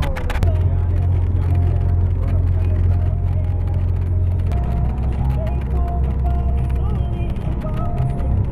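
Coach bus engine droning as heard inside the cabin, a steady low hum that drops to a lower pitch about halfway through. Music from the bus's sound system plays over it.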